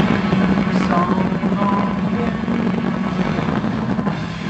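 A live band playing a loud, steady, droning wash of distorted electric guitar and keyboard, with a held low note underneath.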